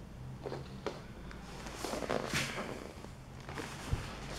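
Faint handling noises: a PVC corner strip is turned over on a laminate floor and a bead of rubber-based glue is squeezed along it, giving soft scrapes and rustles with a sharper click near the end.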